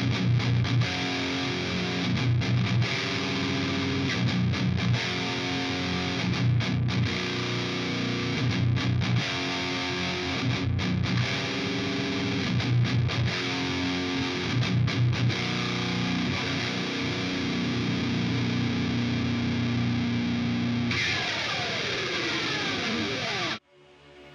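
High-gain distorted electric guitar played through a Diamond Phantom tube amp, heard through a single Shure SM57 placed an inch from the grille at the centre of the speaker. It plays a heavy metal riff of short, rhythmic chugs, then holds a chord for several seconds near the end. A falling sweep follows, and the guitar cuts off suddenly.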